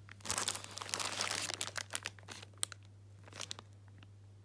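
Plastic bags crinkling and crackling as a hand rummages through them in a cardboard parts box: a dense run of crackles for about two seconds, then a few scattered ones.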